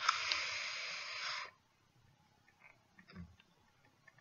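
A person blowing out one long breath through pursed lips, a steady hiss that lasts about a second and a half and cuts off suddenly.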